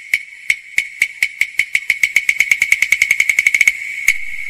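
Cantonese opera percussion over a ringing metal tone, struck about three times a second at first and speeding up into a fast roll that breaks off near the end.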